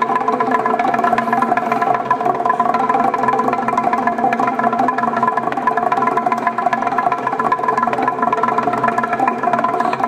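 Txalaparta, the Basque percussion instrument of wooden planks, struck with upright sticks in a fast, unbroken stream of beats. The planks ring at several steady pitches under the strikes.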